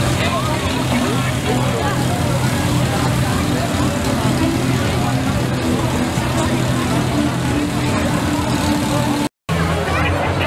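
An engine running steadily at a constant pitch, with a crowd of people talking over it. The sound cuts out briefly near the end.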